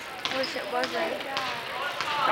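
Basketball dribbled on a hardwood gym floor: a few sharp bounces about half a second apart, under the voices of spectators.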